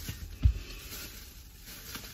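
A single dull, low thump about half a second in, from shopping items being handled as she reaches for the next one, over a faint steady hiss.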